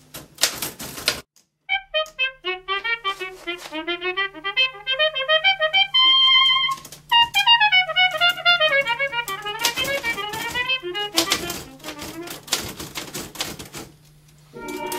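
Typewriter keys clacking in a quick burst, then a melody on a brass instrument. Near the end the music ends and rapid typewriter clacking comes back.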